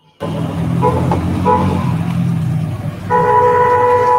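A horn sounding over loud rushing, traffic-like noise: two short toots, then one long steady blast near the end.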